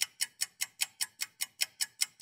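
Rapid, even ticking, about five sharp ticks a second, steady throughout.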